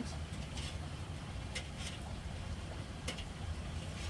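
Metal tongs clicking a few times against the grill grate as bacon strips on a charcoal kettle grill are moved around, over a steady low rumble.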